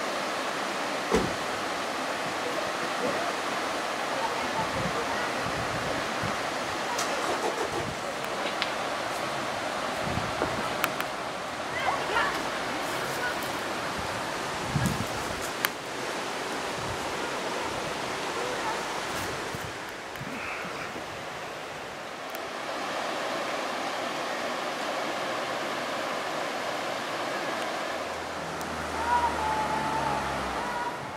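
Water rushing over a low river weir, a steady even roar, with a few brief knocks and faint distant voices over it.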